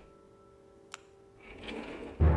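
A single sharp click about a second in, then a cabinet drawer sliding shut on its runners near the end, over soft background music with held notes.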